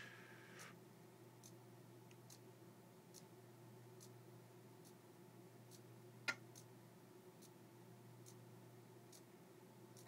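Near silence: a small hobby servo stepping its arm slowly across a fuel-gauge dial under PICAXE 08M microcontroller control, heard as faint ticks about every 0.8 seconds, with one sharper click a little past six seconds in. A steady low hum runs underneath.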